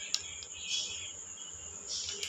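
Steady high-pitched chirring of crickets. A single sharp click comes just after the start.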